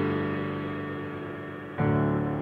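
Background music: a held chord slowly fading, with a new chord struck near the end.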